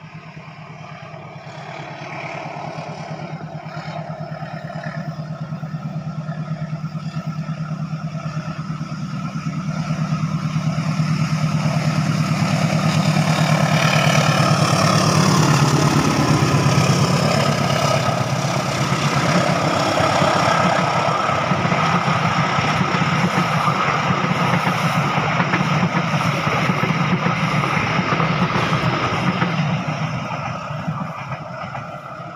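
A CC 201 diesel-electric locomotive (GE U18C) approaches and passes close by at speed. Its engine hum grows steadily louder to a peak about halfway through as it goes past. The train's coaches then keep rumbling by steadily.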